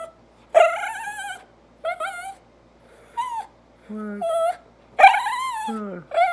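Small dog vocalising in a run of drawn-out whining howls, five calls that bend up and down in pitch. The longest calls come about half a second in and about five seconds in, with shorter ones between.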